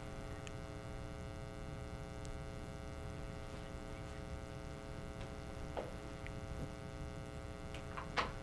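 Steady electrical mains hum with a few faint, light clicks late on, as a spoon works Jello out of a silicone mold.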